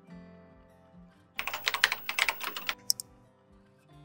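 Computer keyboard typing sound effect: a quick run of keystrokes lasting a little over a second, then a single sharp click, over soft background music.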